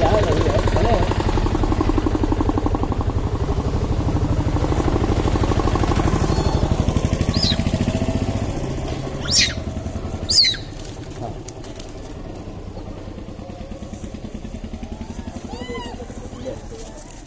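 A small engine running with a low, rapid pulse, fading out a little over halfway through. Then come two short, sharp, high-pitched calls that fall in pitch, about a second apart.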